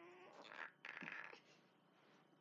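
A girl's brief high-pitched, wavering squeal, then two short rustles as she moves.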